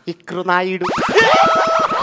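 A comic boing-style sound effect, wavering and then breaking into a quick run of rising clicks, followed by a man's voice held on a long note.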